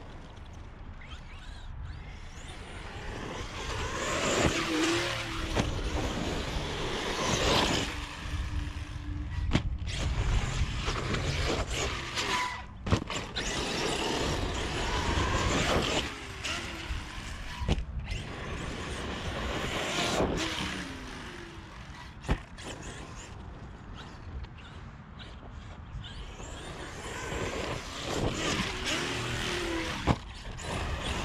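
Arrma Kraton 8S RC monster truck driven hard on dirt: its brushless motor (Hobbywing 5687, 1100 kV, on 8S) whines up and down in pitch with the throttle, over the rush of tyres and flung dirt. Several sharp knocks come from hard landings off jumps.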